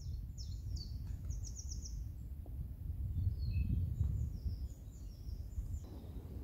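Birds singing: several runs of quick high chirps over a steady low rumble that swells a little around the middle.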